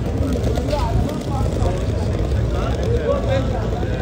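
People talking on a city street, their words not clear enough to make out, over a steady low rumble.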